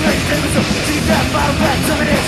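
A thrash metal band playing live at full volume: heavily distorted electric guitars over fast drums, with cymbal hits several times a second.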